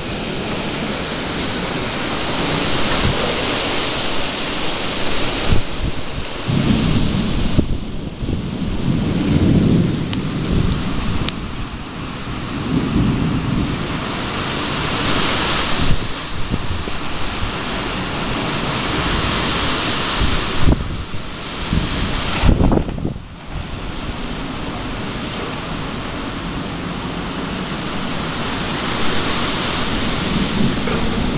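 Thunderstorm: a steady hiss of rain and wind, with thunder rolling in several times, the longest rumbles about a quarter and nearly half of the way in.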